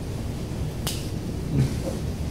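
A single short, sharp click a little under a second in, over a steady low room rumble.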